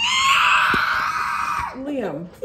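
A young child's long, high-pitched squeal that rises at the start, holds for about a second and a half, then trails off.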